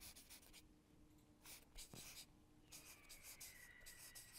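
Marker pen writing on flip-chart paper: faint short scratching strokes in a few bursts, one word being written.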